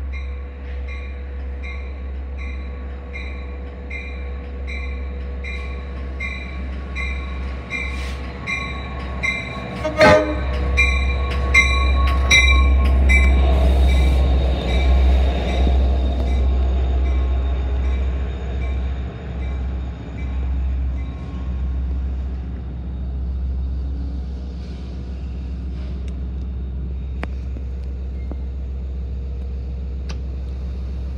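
Diesel-hauled Long Island Rail Road train pulling into a station. A bell rings steadily about twice a second and a short horn toot comes about ten seconds in. The train then passes close with a heavy low rumble, loudest over the next ten seconds, before easing to a steady hum as it stops.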